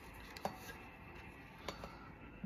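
Two light metallic clicks, about a second and a quarter apart with the first the louder, as a metal medal on its ribbon is handled and hung up.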